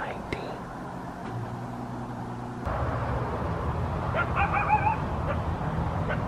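Coyote calling: a short, wavering, warbling howl about four seconds in, over a low steady hum that starts a little before the middle.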